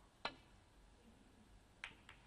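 Snooker cue tip striking the cue ball with a sharp click. About a second and a half later comes a second click as the cue ball hits the reds near the far cushion.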